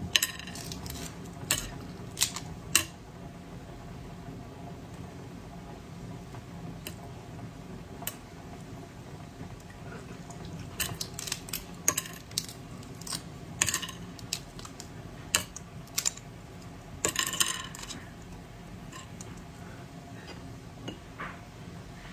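Thick shell of a large dark-green hard-boiled egg being cracked and picked off by hand: scattered sharp clicks and small crackles of shell fragments, bunched near the start and again in the second half, with a brief denser crackle about two-thirds of the way through. The shell is hard and does not come away easily.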